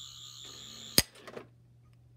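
A high, warbling electronic tone that cuts off about a second in with one sharp click, followed by a couple of fainter clicks.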